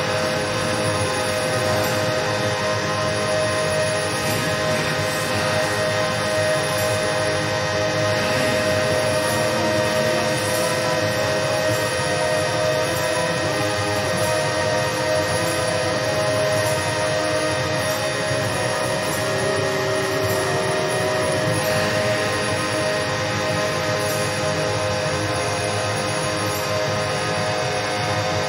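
Dark ambient drone from a black metal album's intro track: a dense, steady wash of noise with a few held tones, without drums or guitars.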